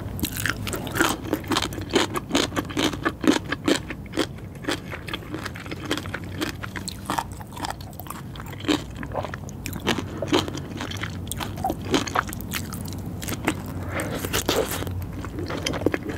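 Close-miked chewing and wet mouth sounds of someone eating raw fish sashimi and nigiri sushi: an irregular run of sharp smacking clicks, densest in the first few seconds.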